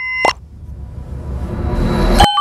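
Animated logo sound effects: a sharp pop about a quarter second in cuts off a ringing chime, then a whooshing swell rises steadily in loudness toward the end.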